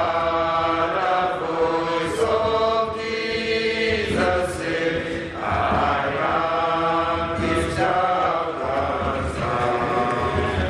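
A group of voices singing a hymn in long, held phrases.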